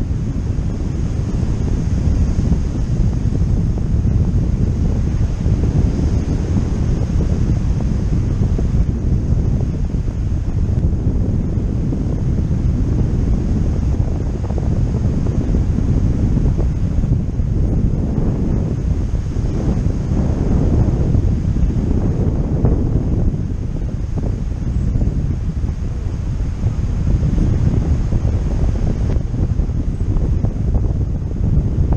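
Wind buffeting the microphone of a camera on a tandem paraglider in flight: a loud, steady, low rushing that swells in gusts past the middle.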